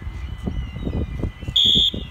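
A single short, high, steady beep-like signal tone near the end, the loudest sound, given as the train prepares to depart, over a gusty low rumble.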